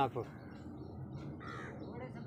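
A crow caws once, briefly, about one and a half seconds in.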